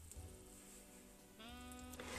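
Faint background music with soft held notes; about one and a half seconds in, a brief pitched tone with a slight upward bend comes in.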